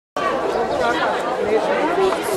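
Crowd chatter: many people talking at once, their voices overlapping in a steady babble that cuts in abruptly just after the start.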